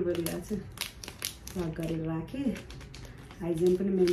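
Clear plastic zip-top bag crinkling as it is handled, short crackles between stretches of a woman's speech.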